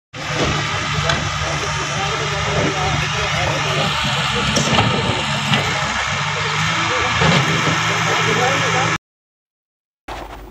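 A large vehicle engine running steadily, with people talking over it; the sound cuts off suddenly about nine seconds in.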